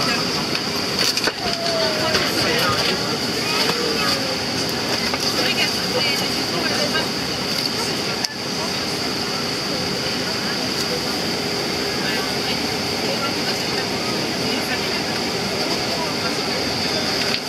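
Steady jet engine noise with a high whine, from a taxiing Boeing 747 freighter's four turbofans, mixed with indistinct voices. The sound dips briefly about eight seconds in.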